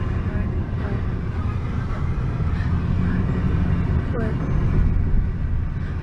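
Steady low rumble of road and engine noise inside a moving car's cabin, with faint voice sounds over it.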